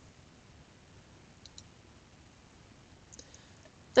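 Faint clicks of a computer mouse over a quiet background: a quick pair about a second and a half in and another pair a little after three seconds, as a checkbox is ticked on screen.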